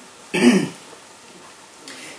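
A woman clears her throat once, briefly, about a third of a second in; the rest is quiet room tone.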